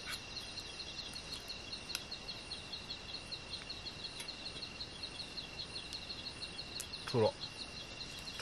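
Night insects such as crickets calling steadily: a fast, even pulsing chirp over a constant high-pitched hum. Near the end there is one short falling vocal sound.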